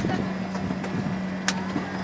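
Dhow cruise boat's machinery humming steadily at one low pitch, with a sharp click about one and a half seconds in.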